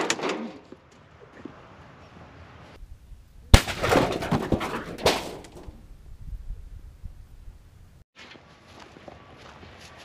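An explosive charge blowing apart a microwave oven: one sharp bang about three and a half seconds in, followed by a second or so of debris clattering down. The first second holds the fading tail of an earlier blast.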